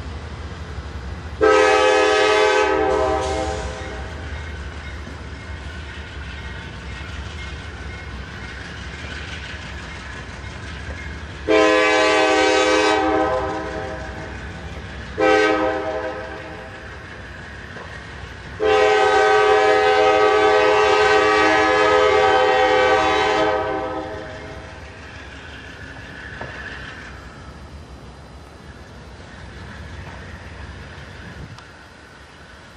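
Multi-chime air horn of a CSX GE AC44 diesel locomotive pulling away, sounding the grade-crossing signal: long, long, short, long, with the last blast the longest. The locomotive's diesel engine runs low and steady under the horn.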